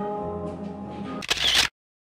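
Background music with held notes, then near the end a loud camera-shutter click sound effect, after which the sound cuts off.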